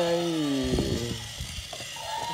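Small electric motor and gearbox of a battery-powered walking toy elephant buzzing with a steady pitch, which sinks and fades over the first second. A few plastic clicks follow as a hand holds the toy.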